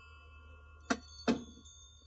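Small shop-door bell ringing twice in quick succession about a second in, each strike followed by ringing tones, as a story sound effect.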